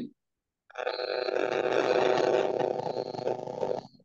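A steady, rough noise lasting about three seconds, coming through a participant's open microphone on a video call.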